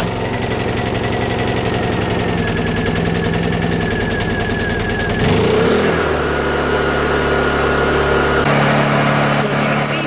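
Honda EU2000i inverter generator's small single-cylinder four-stroke engine running steadily just after starting, with eco mode off. About five seconds in its note shifts as the choke is taken off, and it settles at about 4,300 rpm, changing tone once more a little later.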